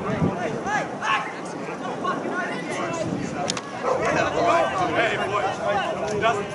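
Spectators' voices talking and calling out over one another, with no single voice clear enough to make out words.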